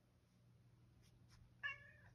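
Domestic cat giving one short, steady-pitched meow near the end.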